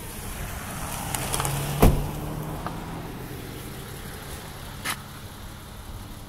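Car rolling slowly with the brake off, heard inside the cabin: a steady low rumble of tyres on the cracked road, with a sharp knock about two seconds in and a fainter one near the end.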